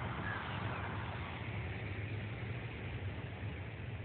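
Wind buffeting the microphone, a steady low rumble that flutters unevenly, over faint outdoor background noise.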